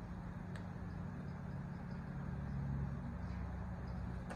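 Steady low background hum, with a faint tick about half a second in as the pages of a sticker book are turned.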